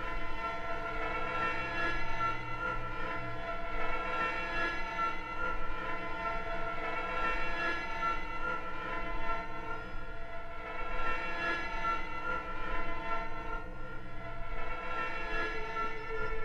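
Sustained synthesizer drone from a film score: a held chord of many steady tones, wavering slightly, played back from a vinyl record.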